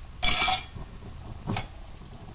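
Metal snuffer lid set down onto a small metal camp stove to smother its burner: a sharp clank with a brief metallic scrape about a quarter second in, then a single light tap about a second and a half in.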